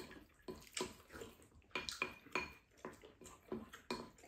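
Wooden spoons scraping and knocking against ceramic rice bowls as two people eat: an irregular run of short clicks and scrapes, a few of them ringing briefly.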